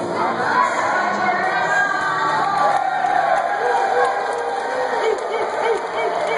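Crowd of spectators cheering and shouting, many voices at once.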